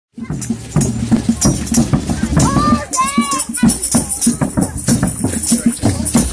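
Hand percussion, drums and shakers, playing a steady fast beat for a walking procession, with crowd voices over it and a couple of short high calls near the middle.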